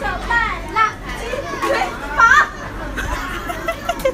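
Several children's voices chattering and calling out over one another, with adult voices mixed in.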